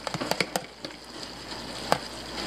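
A nylon slotted spatula tapping and scraping against a plastic bowl as diced vegetables are knocked out into a frying pan: a few sharp clicks early on and a louder one near the end, over a faint sizzle from the pan.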